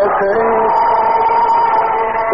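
A male voice singing a mournful religious chant (latmiya), holding a long note that steps up once and then stays steady for over a second.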